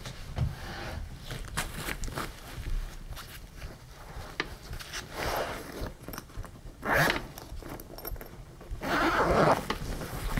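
Handling noise of a fleece-lined suede pouch being worked in and out of the main compartment of a nylon laptop bag: rustling and scraping of fabric with small clicks, in several short bursts, loudest about seven seconds in and again near the end.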